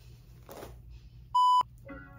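A loud electronic bleep, one steady high tone about a quarter of a second long, about one and a half seconds in; the room sound drops out under it, as with a censor bleep edited over the audio. Before it there is a soft swish of a paddle brush through hair, and music starts just at the end.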